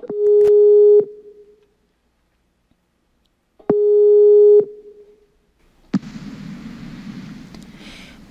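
Skype outgoing-call ringing tone: a steady low beep about a second long, sounding twice about three and a half seconds apart. About six seconds in, a faint even hiss of the open line begins as the call connects.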